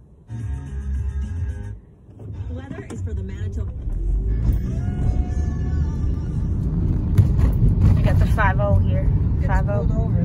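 Car cabin noise while driving: a low engine and road rumble that builds from about four seconds in. Music from the car radio sounds in the first couple of seconds, and a voice comes in briefly near the end.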